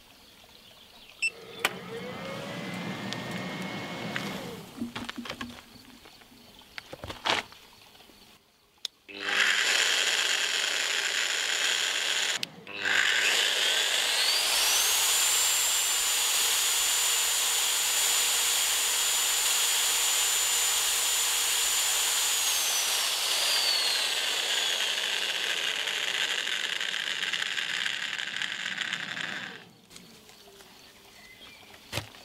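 Electric paddle mortar mixer (about 1800 W) running unloaded, out of the mortar, on a portable power station's AC output. It starts about nine seconds in and stops briefly. It then restarts with its motor whine rising in pitch to a steady high note, which falls again about two-thirds of the way through before the motor cuts off near the end.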